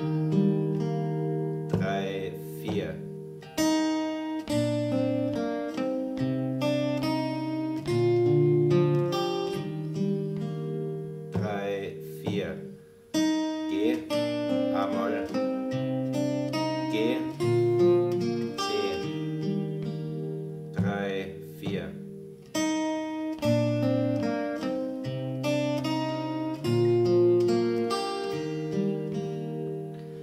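Steel-string acoustic guitar with a capo at the third fret, played fingerstyle at a slow tempo: picked bass notes changing about once a second under plucked melody notes that ring on. This is the G, A minor, G, C sequence of the arrangement, ending in a short pause.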